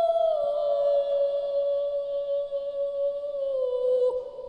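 Wordless singing as show music: one long held note that dips slightly early on and glides slowly down in pitch near the end.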